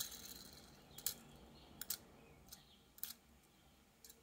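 Faint, scattered light clicks and taps of a small die-cast toy car being handled in the fingers, about half a dozen over three seconds, then near silence.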